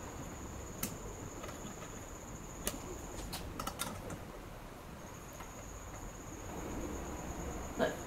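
A few light clicks and taps of a digital caliper being worked on steel bolts to check their length: one about a second in, then a small cluster around three to four seconds, over a faint steady high-pitched whine.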